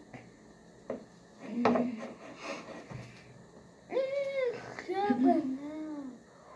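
A young child's wordless, sing-song voice sounds in the second half, rising and falling in pitch. Before that come a couple of light knocks.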